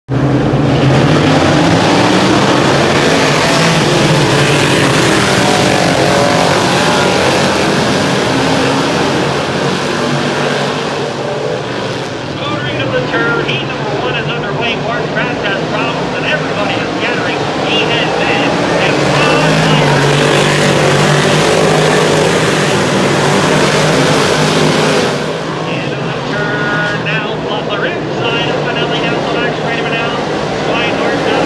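Engines of 358 Modified dirt-track race cars running loud and steady, with voices talking close by over the engine noise.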